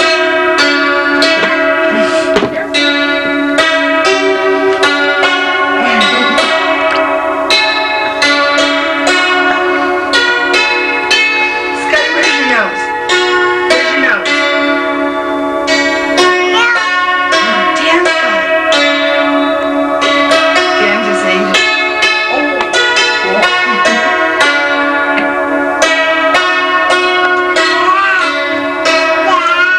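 A small electronic keyboard playing a tune in a quick, even run of bell-like notes. A young child's voice rises and falls over it now and then.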